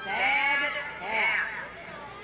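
A person's voice calling out twice, each call drawn out with a wavering pitch.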